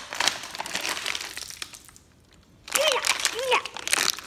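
Plastic water bottle, cracked open by an axe, crinkling and crackling as it is handled, for about two seconds. A child's voice follows.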